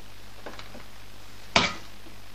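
A ruler knocks once against the drawing board about one and a half seconds in, sharp and brief. Faint scrapes on the paper come before it, over a steady low hum.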